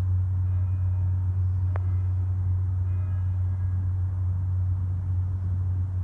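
Deep, steady hum of the great Salvator bell, a large bronze tower bell, still sounding after being struck. Faint higher overtones fade in and out, and there is a single faint click a little under two seconds in.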